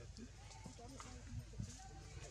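Faint, indistinct voices chattering, with a few soft clicks about one and a half seconds in.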